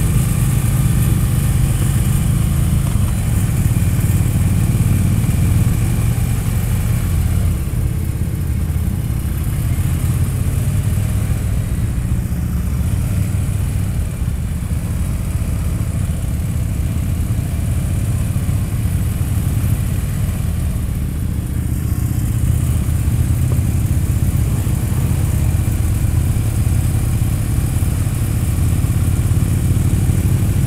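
Motorcycle engines running steadily at low parade speed, a continuous low rumble from the touring bike carrying the camera and the bikes around it, with wind rushing over the microphone.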